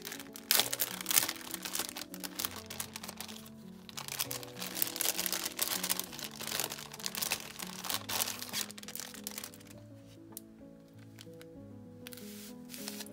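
Clear plastic packaging crinkling and rustling as it is handled and an item is pulled out of it, over soft background music. The crinkling dies away near the end, leaving only the music.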